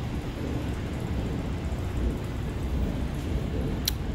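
Low, uneven rumbling noise in a concrete parking garage, picked up by a phone carried along at walking pace, with one sharp click just before the end.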